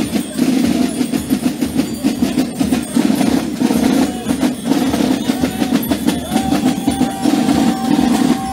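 Gilles carnival drum band, snare drums and bass drum, playing dense continuous drumming. A single held note sounds over it for about two seconds near the end.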